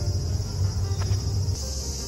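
Insects chirring in a steady, continuous high drone over a low rumble; the chirring changes slightly about one and a half seconds in.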